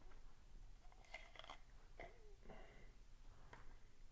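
Near silence with a few faint clicks and rustles from handling a small tube and the wire spring skewer taken out of it.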